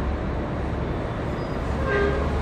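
Steady low rumble of room background noise, with no speech over it.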